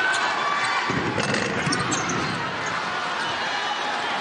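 A basketball being dribbled on a hardwood court over the steady noise of a large arena crowd.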